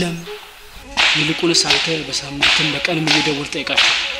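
A man's low voice speaking in short broken phrases, with two stretches of hiss laid over it, the first about a second in and the second midway through.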